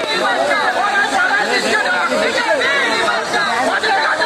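Several people talking at once, with loud overlapping voices of a crowd and no words standing out.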